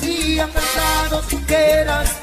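Salsa romántica music playing, with a steady bass line under it.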